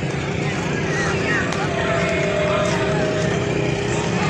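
Honda motorcycle engine running steadily at low speed, with street noise and faint voices around it. A steady higher tone is held for a bit under two seconds in the middle.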